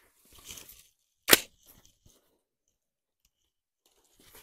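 A single sharp shot a little over a second in from a suppressed Colt AR-15 carbine (14.5-inch barrel, Surefire FA556-212 suppressor) firing 5.56 M193 ball, with faint rustling just before it.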